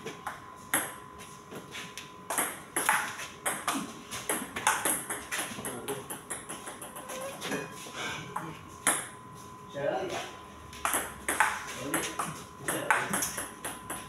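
Table tennis ball clicking back and forth off the bats and the tabletop in a rally: a run of sharp, short ticks at an uneven pace.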